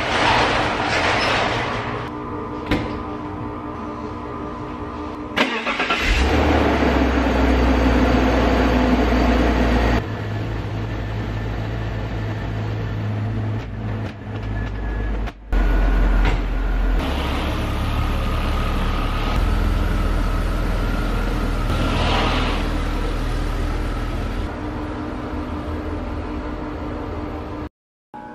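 BMW E46 3 Series coupe's inline-six engine starting about six seconds in, then running at idle, with a few abrupt shifts in level. It has a freshly fitted replacement throttle body, and its engine adaptations have just been reset.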